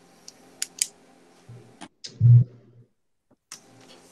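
Computer mouse clicks, a handful in the first two seconds and one more near the end, with a short low thump just after two seconds in, over a faint steady hum.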